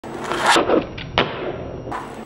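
A fingerboard being handled on a desktop: a rustling scrape, then two sharp clacks, about a second in and near the end.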